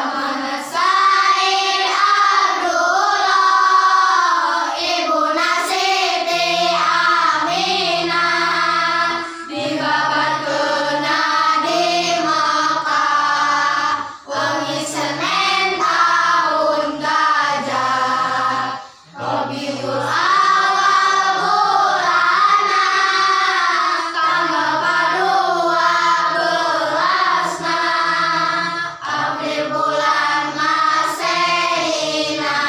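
A group of children singing a Sundanese nadzom, a devotional song for the Prophet's birthday, together without instruments. They sing steadily, with short breaks between lines.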